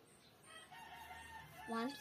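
A rooster crowing faintly in the background, one held call of about a second.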